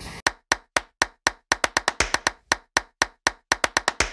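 A string of about twenty sharp, dry clicks laid in as an editing sound effect, with dead silence between them. They come slowly at first, then quicker, with a fast run near the end.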